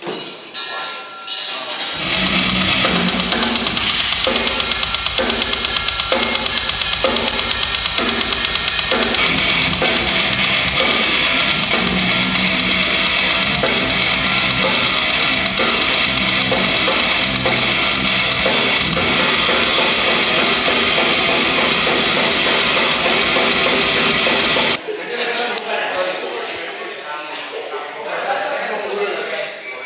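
A heavy metal band playing loud through the venue PA during a soundcheck: drums with a steady pulse and dense distorted guitars. It comes in after a couple of seconds of single knocks and cuts off abruptly near the end.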